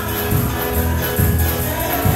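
A congregation singing a gospel song in church, backed by a band with a steady beat.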